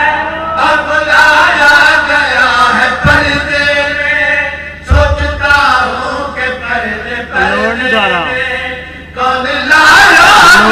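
A man reciting in a melodic, chant-like voice into a microphone, holding long drawn-out phrases with wide slides in pitch. Two short low thuds come about three and five seconds in.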